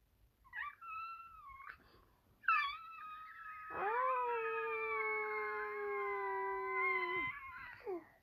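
A baby girl vocalizing: a couple of short, high squeals, then one long held 'aah' that drifts slowly down in pitch for about three and a half seconds.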